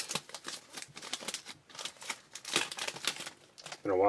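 Trading cards being slid out of an opened pack and handled, a run of light, irregular clicks and rustles of card stock, busiest a little past the middle.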